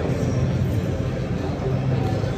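Steady low rumble of background noise filling a large indoor hall.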